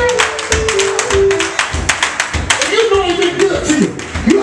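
Live gospel band with drums and electric bass playing an upbeat groove, a church congregation clapping along in rhythm, and voices singing and calling out over it.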